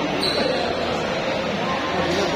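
Celluloid-type table tennis ball bouncing in small light ticks, with people's voices talking in the hall.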